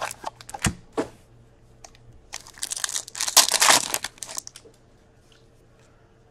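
A few light clicks and taps of a small hockey card box being opened, then the 2019-20 Upper Deck Ice card pack's wrapper torn open and crinkled for about two seconds in the middle.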